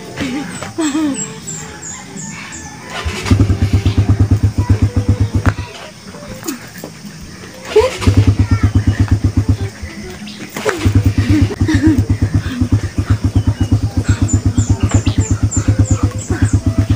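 A low, rapid pulsing sound, about six pulses a second, comes in three long stretches, the first about three seconds in. It sounds like a repeated 'uh-uh-uh'. Two short runs of falling high chirps are heard as well.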